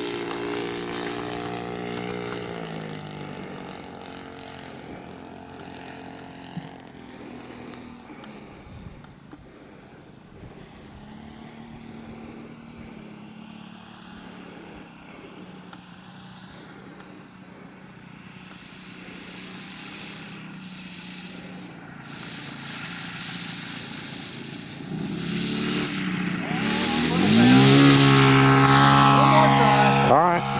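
Saito 100 four-stroke glow engine of a large RC model airplane in flight. It is loud at first and falls in pitch as the plane moves away, runs faint and steady while far off, then grows loud and rises in pitch as the plane comes in close, dropping in pitch again as it passes near the end.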